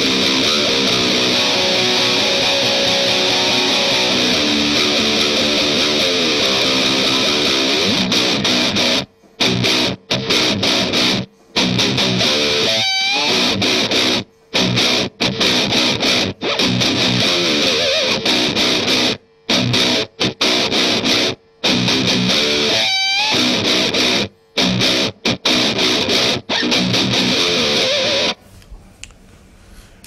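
Distorted electric guitar, a Fender Telecaster, playing a heavy metal riff: about nine seconds of sustained, ringing chords, then a choppy riff broken by abrupt muted stops. A high squealing note bends up and down in pitch twice along the way, and the playing stops shortly before the end.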